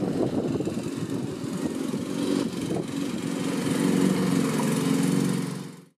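An engine running steadily with a constant hum, fading out near the end.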